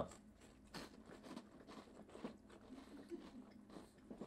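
Saltine crackers being bitten and chewed: a faint, irregular string of small crisp crunches.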